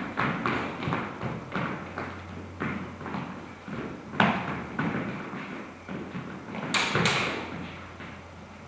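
Fencers' footsteps and stamps on a hard floor during a bout: a run of irregular thuds and taps, with a strong one about four seconds in and two sharp, bright hits close together near seven seconds.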